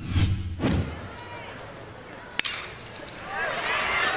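A short whooshing intro sting, then ballpark noise with a single sharp crack of a bat hitting a ground ball about two and a half seconds in. Crowd noise and an announcer's voice build near the end.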